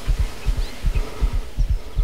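A racing heartbeat sound effect: deep, quick lub-dub thumps, a little under three beats a second, steady throughout. It marks the pulse of a hunter with buck fever at around 160 beats a minute.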